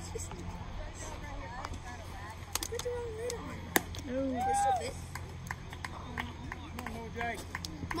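Spectators at a baseball game calling out in scattered voices over a steady low hum, with one sharp crack a little before the middle.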